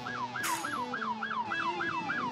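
Electronic siren sounding in a fast yelp, a quick run of falling sweeps about four or five a second, over background music.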